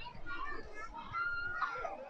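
Crowd of spectators chatting, several voices overlapping, including children's voices; one voice holds a long steady call in the second half.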